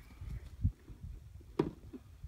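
A few low thuds, then a single sharp plastic clack about a second and a half in as a small picnic cooler's hinged lid is lifted open.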